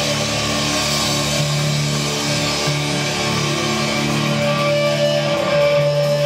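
Live melodic black/death metal band playing, led by distorted electric guitars holding long sustained chords, loud and dense throughout, with a higher note coming in partway through.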